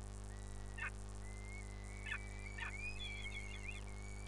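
Bird calls: three short chirps and a thin, wavering whistle that breaks into quicker warbling near the end, over a steady low hum.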